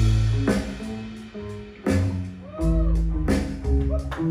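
A rock trio playing live: electric guitar, bass guitar and drum kit. The playing thins out briefly about half a second in, then comes back in with a loud hit just before the two-second mark.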